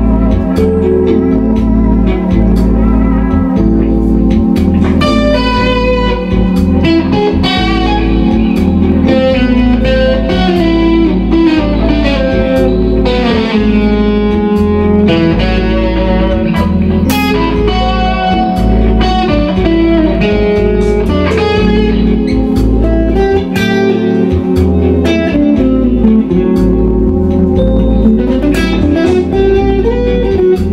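Electric guitar improvising fast fusion lines over a backing track that holds one static A minor 6 chord, with a steady pulsing bass underneath.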